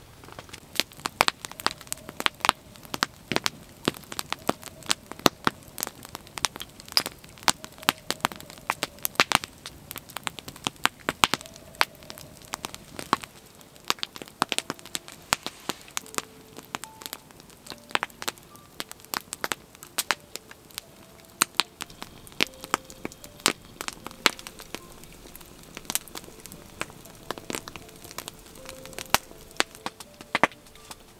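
Log fire crackling, with frequent sharp pops of burning dry wood, several a second, thinning out somewhat in the second half.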